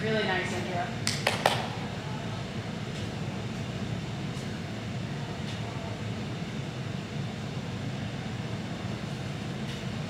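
Steady low hum of gym room noise. A brief call from a voice comes right at the start, then three quick sharp taps a little over a second in.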